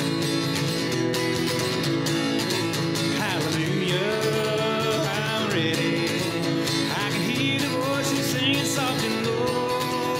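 Acoustic guitar strummed in a steady country-gospel rhythm, with a man's voice singing along from about three seconds in.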